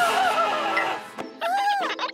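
Two wavering, wordless cartoon-character cries of dismay over background music.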